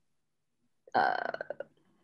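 After nearly a second of silence, a woman's single drawn-out hesitation sound, "uh", lasting under a second and trailing off.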